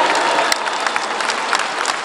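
Audience applauding during a pause in a speech.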